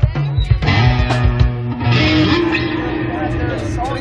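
Amplified live rock band: electric guitar and bass notes ringing, with drum hits in the first second, over crowd voices.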